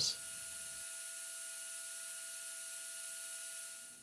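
3D printer part-cooling fan blowing through a restrictive duct: a steady, quiet airy hiss with a faint steady whine, fading out near the end.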